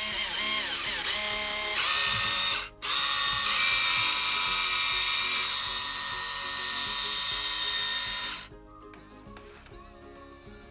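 Electric arm motors of a Huina 1592 RC excavator whining as the boom and bucket move with a padlock load. The whine runs twice, breaking off briefly just under three seconds in, and stops about eight and a half seconds in.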